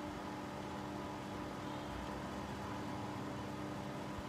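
Steady background hiss with a faint constant hum: room tone, with nothing else happening.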